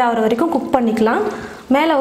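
A woman speaking, with a short pause about a second and a half in.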